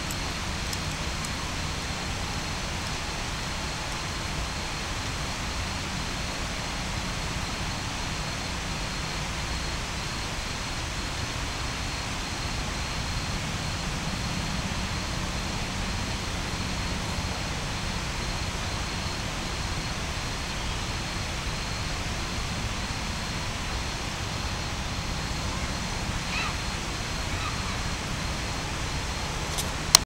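Steady outdoor city ambience at night: a constant low hum and wash of distant traffic with no distinct events.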